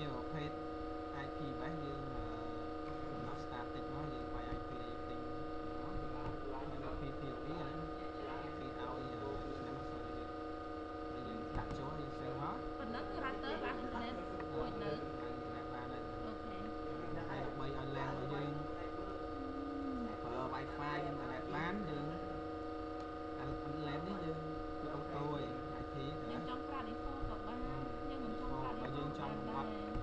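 Steady electrical hum made of several fixed tones, with faint voice-like sounds coming and going in the background.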